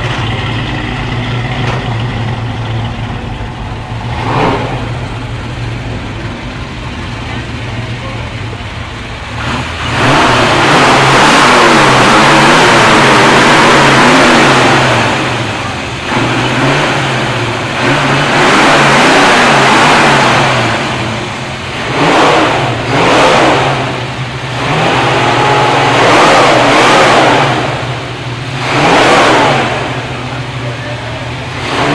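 A car engine idling with a steady low note, then revved loudly and repeatedly from about ten seconds in, with a few shorter revs near the end.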